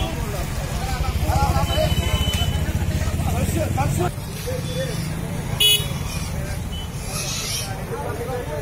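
Indistinct voices of people talking, over a low, evenly pulsing engine rumble from a nearby vehicle that is strongest in the first half and drops off about four seconds in.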